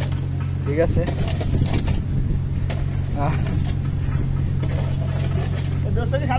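A steady low engine hum running evenly throughout, with short bits of voices over it.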